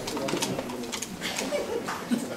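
Audience murmuring in a hall, with a few scattered claps as the applause dies out.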